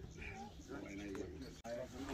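Several people talking quietly in the background, with no one voice standing out.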